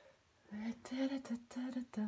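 A woman's voice, quiet for the first half second, then murmuring in short, evenly pitched syllables without clear words.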